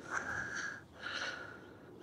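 Faint, short breaths close to the microphone, a few soft puffs of air with brief gaps between them.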